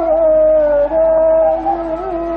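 Hindustani classical singing in raga Hamir: a voice holds a long note that sinks slightly. After a brief break about a second in, it steps up to a steady held note.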